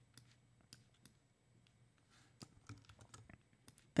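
Faint, irregular clicks from a computer keyboard and mouse being worked, a few scattered ticks at first and a denser run about two and a half seconds in, over a faint low hum.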